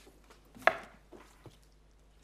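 A sharp knock of folders and papers being set down on a desk, about two-thirds of a second in, with a few lighter taps and shuffles around it.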